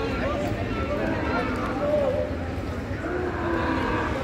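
Indistinct voices of people on the street over a steady low rumble of traffic.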